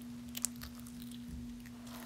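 A hand squishing and kneading thick, grainy slime in a plastic tub, with faint sticky crackles and two sharp pops about half a second in. A steady low hum runs underneath.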